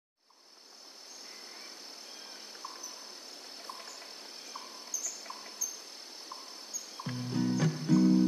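Outdoor nature ambience of insects and birds: a steady high cricket-like drone with short chirps about once a second, fading in at the start. A slowed, reverb-heavy acoustic guitar enters about seven seconds in and is much louder.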